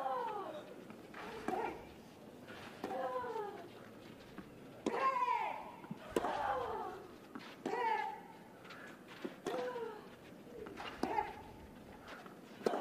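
Tennis rally on a clay court: racket strikes on the ball about every one and a half seconds, each followed at once by a player's grunt that falls in pitch.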